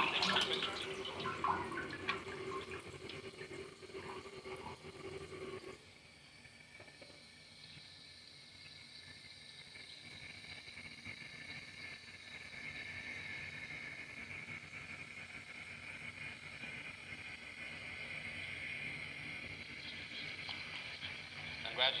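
Audience applauding: dense clapping that drops off abruptly about six seconds in, then continues as a softer, steady hiss of applause that slowly builds.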